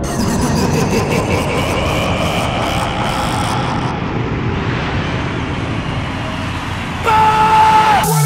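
A dense noisy break in an electronic hardcore track. Rapid high ticks slow down and stop in the first few seconds while a hiss rises steadily in pitch, then a held tone sounds for the last second, just before the drop.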